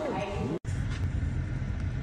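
Steady low rumble of a car's cabin, the noise of its engine and road running under a closed interior. In the first half second, a few falling tones from the end of a song cut off abruptly before the rumble begins.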